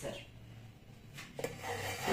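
Faint handling noise: a light click past the middle, then soft rubbing near the end, as a hand and a chocolate egg half come to the frying pan.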